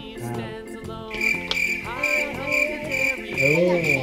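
Cricket chirping: a high chirp pulsing about four times a second, starting abruptly about a second in.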